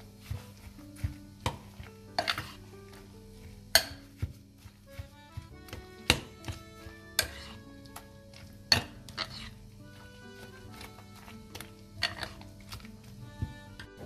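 Metal spoon stirring a wet spinach filling with torn phyllo in a glass bowl, knocking and scraping against the glass in irregular clinks every second or so, the loudest about four, six and nine seconds in.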